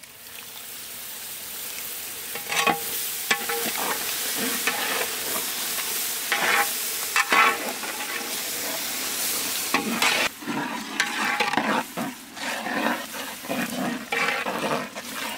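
Tomato-onion masala sizzling in a large metal pot as curd goes in, building over the first couple of seconds. A wooden ladle stirs it, scraping and knocking against the pot again and again.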